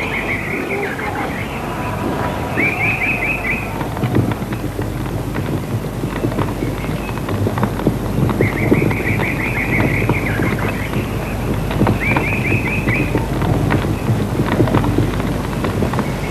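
A bird's short, rapid trilled call, repeated four times a few seconds apart, over a steady noisy background with small knocks and rustles.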